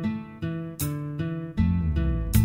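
Instrumental introduction of a Vietnamese nhạc vàng ballad: guitar picking a run of single notes that each ring and fade, with deep bass notes coming in near the end.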